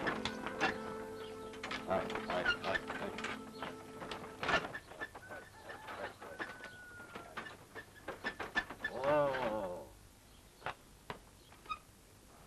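Held music notes that stop about four and a half seconds in, over irregular knocks from a horse walking and a wooden cart rolling. Just before the end of the busy part comes a short, loud, wavering voice-like call, then only a few scattered clicks.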